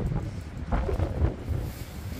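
Gusty wind buffeting the microphone on an exposed sea breakwater, an uneven low rumble rising and falling.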